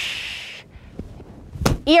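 A hissing breath forced out through bared, clenched teeth, fading out about half a second in. Near the end comes a single slap of both palms against the ears of a rubber striking dummy.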